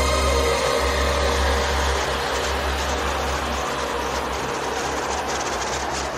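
Trance mix transition: the held synth chords thin out into a rushing white-noise sweep while the low bass drone fades, with a brief dip near the end before the music comes back in.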